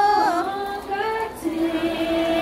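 Female singing, with long held notes that slide from one pitch to the next.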